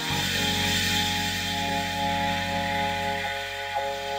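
Experimental electronic music: several held tones over a low drone, with a hissing noise layer on top.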